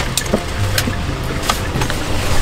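A few scattered knocks and clicks from a person climbing into a parked car with a backpack, over a steady low rumble.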